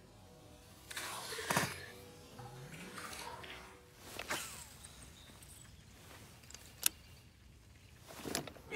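A small fish tossed back splashing into the water about a second in, then a fishing rod whipped through a cast about four seconds in, and a single sharp click near the end.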